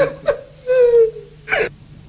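A man's short whimpering moan: one drawn-out whine that slides slightly down in pitch, with a brief gasp-like burst about a second and a half in.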